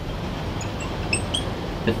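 A marker squeaking in several short, high strokes on a glass lightboard as a word is written, over steady low background noise.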